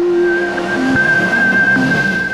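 Channel-ident music sting: electronic sound design with one steady high held tone over a loud rushing noise.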